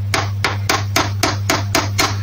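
Small hammer tapping lightly and evenly on a metal power steering pump part, about four taps a second. The taps are kept gentle to work the heated part free without harming the pump. A steady low hum runs underneath.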